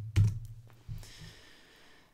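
A few keystrokes on a computer keyboard in the first second, then faint room tone.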